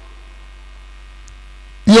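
Steady low electrical mains hum in the audio feed during a pause in speech, with a man's voice starting just before the end.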